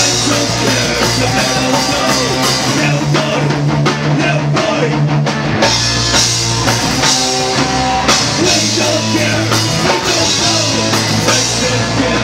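Punk rock band playing live: electric guitars, bass guitar and drum kit, loud and unbroken, with dense drum hits.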